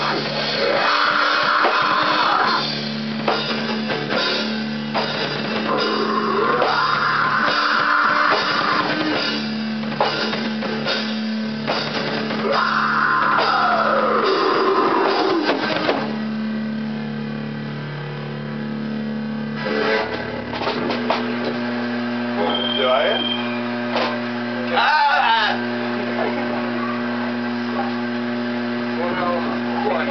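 Amateur rock band playing loud through amplifiers: drum kit, electric guitar and bass under a vocal line held in three long phrases. The song ends about sixteen seconds in, leaving a steady amplifier hum and a few brief voices.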